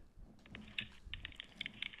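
A faint, quick, irregular run of clicks.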